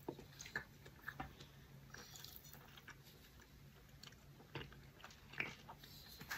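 Close-miked eating sounds of a man chewing stir-fried noodles with vegetables: soft, scattered wet mouth clicks and smacks, the loudest one near the end, over a faint steady low hum.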